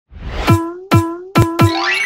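Cartoon-style intro jingle: four bouncy 'boing' notes, the last two close together, each with a quickly dropping low thump under a steady tone. A fast rising slide follows near the end.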